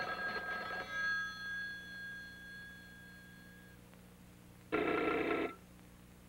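A telephone bell rings twice: a first ring of about a second whose tones fade out over the next few seconds, then a shorter second ring near the end.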